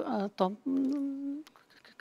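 A woman's voice in mid-answer: a short falling syllable, then a steady held hum-like 'mmm' for under a second, a filler sound while she gathers her words.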